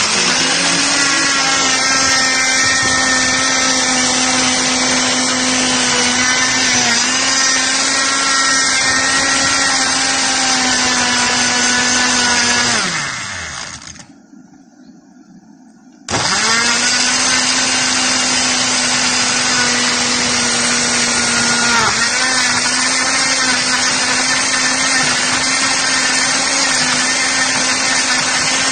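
Electric blender motor running at full speed, blending yogurt and strawberries. About thirteen seconds in it winds down with a falling pitch and stops for about two seconds, then starts again and runs on, its pitch dipping briefly twice as the load shifts.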